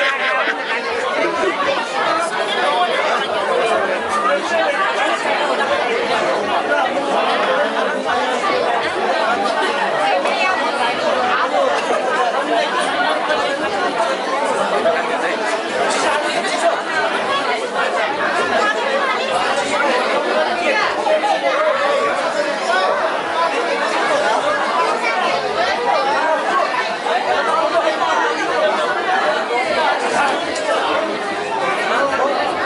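Crowd chatter: many people talking over one another at once, a steady hubbub filling a crowded room.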